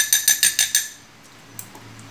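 Metal spoon clinking rapidly against a glass mixing bowl while stirring batter: a quick run of bright clinks through the first second, then it stops.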